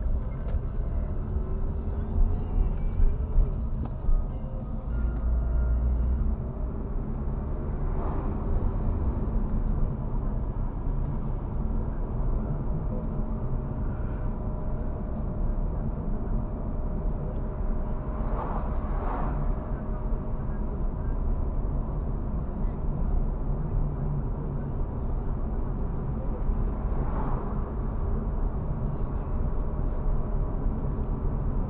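Steady low rumble of road and engine noise inside a moving car, with a few brief louder swells.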